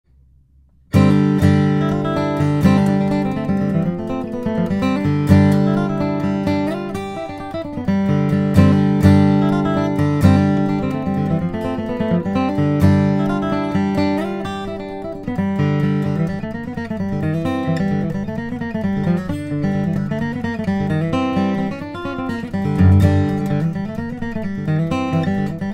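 Steel-string dreadnought acoustic guitar, a John Arnold D-18, being played solo. It starts about a second in with strummed chords and picked notes, and moves to more melodic single-note lines in the second half.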